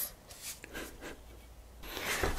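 Quiet room tone with faint soft handling noises from a plastic squeeze bottle as thick liquid silicone is squeezed into a plastic cup.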